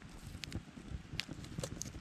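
Small campfire of dry twigs and branches crackling, with a few sharp pops over a faint steady hiss.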